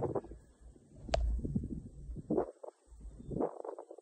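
Wind buffeting the microphone in intermittent low gusts, with faint rustling and a single sharp click about a second in.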